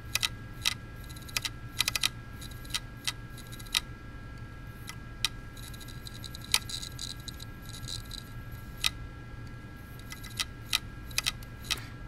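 Open hard drive with a damaged, contaminated platter clicking and ticking irregularly over a steady high whine, the sound of the read/write heads failing to work the scratched platter. The drive is having a very, very bad time.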